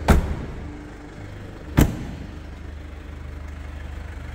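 Two solid car door slams about a second and a half apart on a Mercedes-Benz C220 saloon, over a low steady hum.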